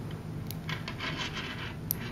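Small neodymium magnet spheres clicking and rubbing against one another as fingers work magnets out of a flat strip of magnet balls. There is a sharp click about half a second in, a stretch of scratchy rubbing, and another sharp click near the end.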